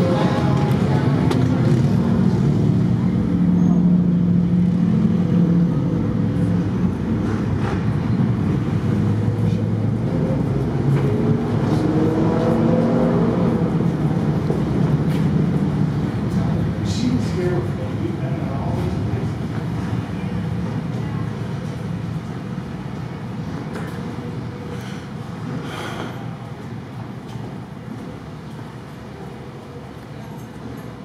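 Indistinct background voices mixed with street traffic, car engines going by, gradually growing quieter.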